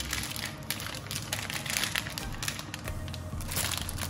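Thin plastic food bag crinkling in irregular rustles as it is handled and squeezed.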